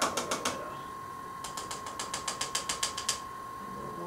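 A paintbrush rattled against the sides of a rinse-water cup, making rapid clicks: a short run of four at the start, then about a dozen quick clicks over a second and a half.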